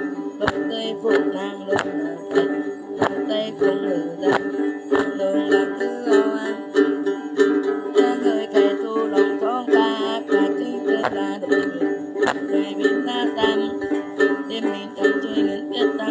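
Đàn tính, the Tày long-necked gourd lute, plucked in a quick repeating pattern for Then ritual chant, with sharp percussive strikes about once a second. A woman's voice sings over it at times.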